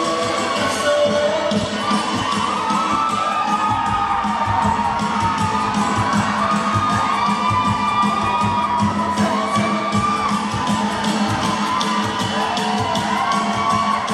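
An audience cheering and shouting over loud dance music with a steady beat.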